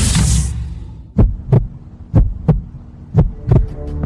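Heartbeat sound effect: three double thumps, about one beat a second, over a low hum. A whooshing noise fades out just before the first beat.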